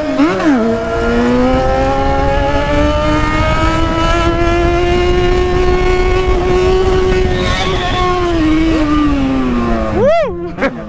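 Yamaha XJ6's inline-four engine held at high revs through a long wheelie, after a quick blip of the throttle at the start. The pitch climbs slowly for most of the run and eases down near the end as the throttle closes, with wind rushing on the microphone.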